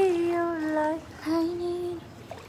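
A woman's voice singing or humming without clear words: long held notes, each sliding slightly down in pitch, with a short break about a second in.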